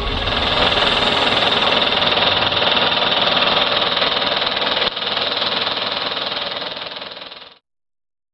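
A dense, steady mechanical-sounding noise, like a running machine, that dips briefly just before five seconds in, fades slightly and cuts off abruptly about seven and a half seconds in.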